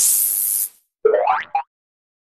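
Animated outro sound effects: a loud rush of noise that dies away about three-quarters of a second in, then a short tone sliding quickly up in pitch and a brief blip about a second and a half in.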